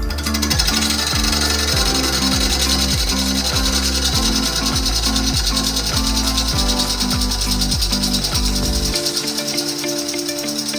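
A turning tool cutting into a spinning chunk of bigleaf maple on a wood lathe, a steady scraping hiss as chips fly off. Background music with a bassline plays under it and its bass drops out near the end.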